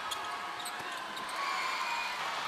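A basketball game heard courtside: steady arena crowd noise, with a ball bouncing on the hardwood court and a few short high squeaks.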